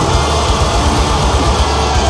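Distorted extended-range electric guitar playing a low, chugging metal riff, with a dense low end pulsing rapidly underneath.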